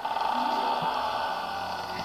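Cartoon soundtrack playing from a computer's speakers, picked up by a phone: a steady hissing noise with a held mid-pitched tone underneath.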